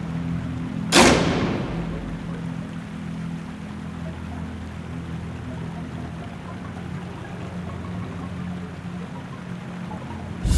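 Dark film-score music: a sustained low drone, with one sudden loud hit about a second in that rings off over about a second.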